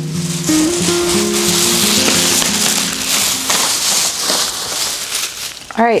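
Thin plastic shopping bag rustling and crinkling loudly as it is carried and handled, over quieter background music.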